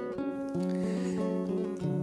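Background music with slow, sustained notes; a new low note comes in about half a second in and is held.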